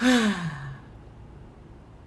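A woman sighs once: a breathy, voiced sigh that falls in pitch and lasts under a second.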